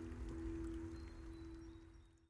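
The last chord of an acoustic guitar ringing out and fading away as the song ends.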